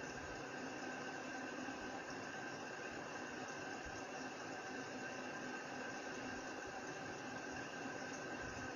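Steady background hiss with a faint steady hum: room tone and microphone noise, unchanging throughout.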